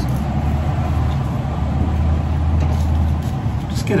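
A low, steady rumble like a vehicle engine running, which stops near the end.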